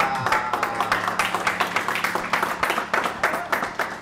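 A small audience clapping.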